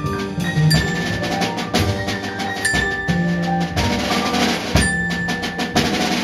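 Live band music: a drum kit keeps a beat under short pitched notes, with a small mallet instrument being struck.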